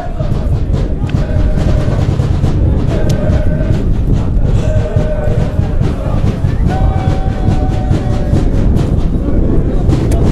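Strong gusting wind buffeting the microphone, a heavy continuous rumble, with several drawn-out tones of about a second each rising over it at intervals.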